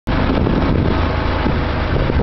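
Open side-by-side utility vehicle driving over a rough dirt field track: steady engine and chassis noise, loud and unbroken.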